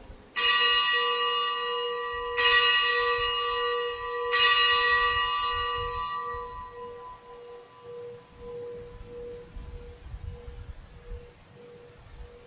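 A bell struck three times, about two seconds apart, for the elevation of the host at the consecration of the Mass. Each stroke rings out with bright overtones, and a lower pulsing hum fades slowly after the last.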